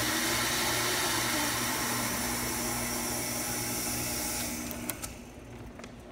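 Astro envelope feeder running, a steady hum and hiss from its vacuum pump and feed motor, which dies away about five seconds in; a few faint clicks follow.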